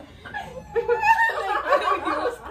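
A woman laughing hard, starting after a brief lull near the start.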